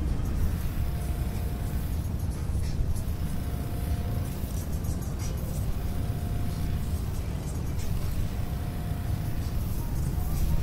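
Wind rushing over the microphone of a camera mounted on a Slingshot ride capsule as it swings and tumbles in the air, a steady low rumble.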